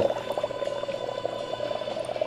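Pieces of dry ice bubbling steadily in hot water in a percolator: a dense, continuous gurgling.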